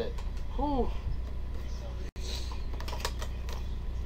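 A stack of trading cards handled and shuffled by hand, giving a few light, scattered clicks and flicks over a steady low hum.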